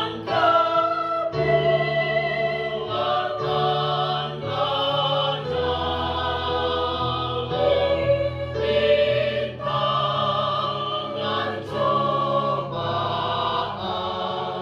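Small mixed choir of men's and women's voices singing a hymn in parts with long held notes, accompanied by an electronic keyboard playing sustained chords and bass notes.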